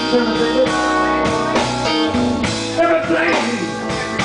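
Live blues band playing an instrumental passage: electric guitar over bass and drums, with a steady beat of about two hits a second.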